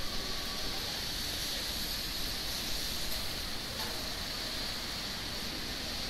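Steady outdoor city background noise: an even wash of sound with no distinct events standing out.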